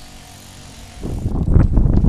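Wind buffeting the camera microphone: a loud, low, rough rumble that starts about a second in, after a quiet first second.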